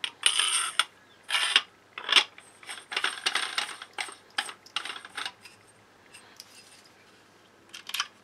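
Metal barrel shroud of an Airmaks Katran air rifle being screwed back on by hand: a run of short metallic scraping rasps over the first five seconds or so, then fainter, sparser ones.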